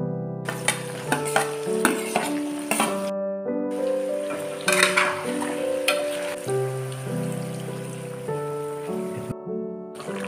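Chicken, potato and tomato pieces sizzling in a metal wok while a spatula stirs and scrapes the pan, over background music of sustained notes. The sizzling breaks off briefly twice.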